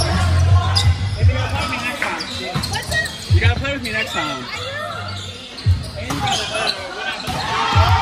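A volleyball being struck during a rally, several sharp hits a second or two apart, with players shouting between them, echoing in a large gym.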